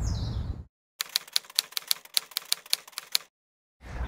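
A rapid, slightly uneven run of sharp clicks, about eight or nine a second, lasting a little over two seconds.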